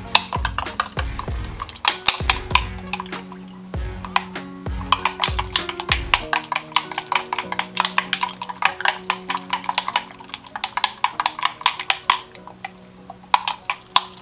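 Metal spoon stirring liquid in a glass measuring mug, clinking quickly and continuously against the glass. Background music with held notes plays underneath, with deep bass notes in the first half.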